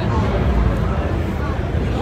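Crowd chatter in a large, busy exhibition hall: many overlapping voices with no single voice standing out, over a steady low rumble.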